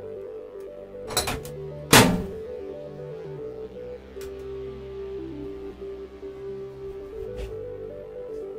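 Background music, with a microwave oven door being shut: a light knock about a second in, then a louder thunk about two seconds in as the door closes.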